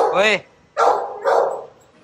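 A dog barking three times: a pitched bark at the start, then two rougher barks about a second in.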